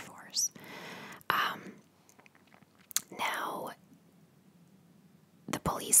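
Close-miked soft whispered speech with breathy, hissy stretches and a few sharp mouth clicks, then a pause of about a second and a half near the end before the voice resumes.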